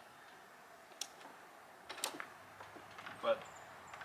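A few light clicks and knocks as a string trimmer is shifted about on a portable workbench, with sharp clicks about one and two seconds in. A short vocal sound comes near the end.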